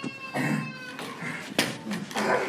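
A high-pitched, drawn-out wailing cry from a person that falls slightly and fades about a second in, broken by short cries, with a sharp knock about one and a half seconds in.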